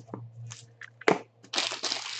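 Clear plastic wrapping being crumpled and crinkled by hand: a few light rustles, a sharp click about a second in, then a dense burst of crackling in the last half-second.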